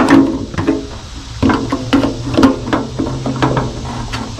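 Steel tongue-and-groove pliers clinking and knocking against a faucet's brass supply-line fitting and the stainless steel sink deck as the fitting is worked loose, an irregular series of sharp metal knocks with the sink ringing briefly after several of them.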